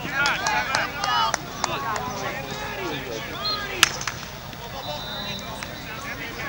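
Overlapping shouts and calls from players and people on the sideline of a youth lacrosse game, busiest in the first half. A single sharp crack comes about four seconds in.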